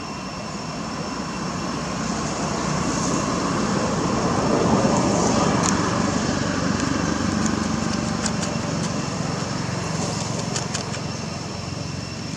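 An engine passing by, growing louder to its peak about five seconds in and then slowly fading.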